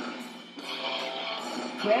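A song from an iPod Touch, picked up by an electric guitar's pickups and played through a guitar amp. It sounds thin, with no deep bass.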